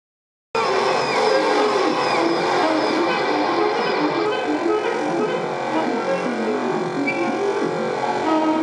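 Free-improvised music: a tenor saxophone playing among a dense, layered mix of other sounds, with many pitches gliding up and down. It cuts in abruptly about half a second in.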